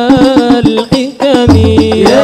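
Sholawat devotional singing: a male voice sings a wavering melody into a microphone over rapid hand-struck rebana frame drums. The voice breaks off briefly just past the middle while the drums keep going.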